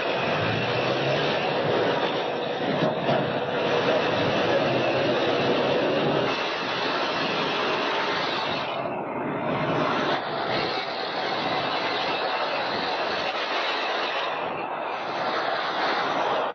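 Loud, steady motor-vehicle noise, engine and rolling noise together, with a short dip about nine seconds in.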